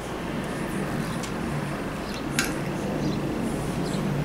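Wind rumbling on the microphone outdoors, with a couple of faint clicks as the lid of a small glass jar is twisted open.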